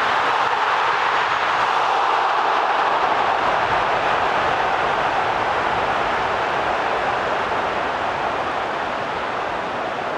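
Large football stadium crowd making a loud sustained noise as an attack builds, easing off gradually in the second half.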